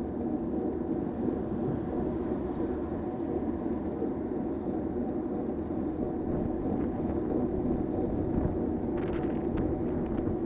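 Steady engine and road noise heard inside a moving car through a dashcam's microphone.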